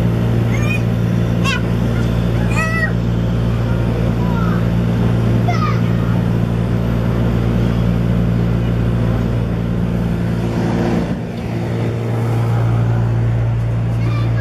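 Electric blower fan keeping an inflatable slide inflated, running with a loud, steady hum that dips briefly about eleven seconds in. A few short, high-pitched children's voices sound over it.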